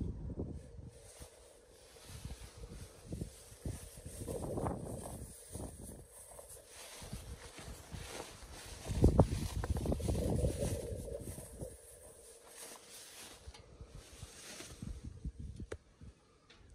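Wind buffeting the microphone outdoors: an uneven low rumble that comes in gusts, strongest about four seconds in and again from about nine to eleven seconds.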